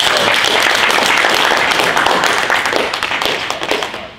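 Audience applauding, dense clapping that tapers off slightly near the end.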